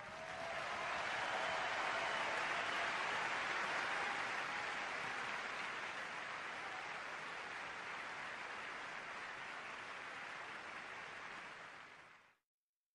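Audience applauding after a song, a steady wash of clapping that slowly fades and is cut off abruptly at the very end.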